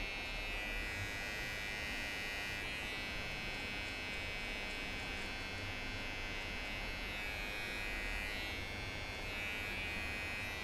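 Cordless T-blade hair trimmer buzzing steadily as it is run along the hairline to clean up stray hairs around the ear.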